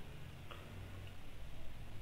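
A quiet pause: a faint low hum with two faint clicks, about half a second and a second in.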